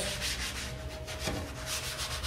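A worn dish sponge scrubbed back and forth over a wet screen-printing pallet, in repeated rubbing strokes. It is lifting fabric lint off the pallet's adhesive.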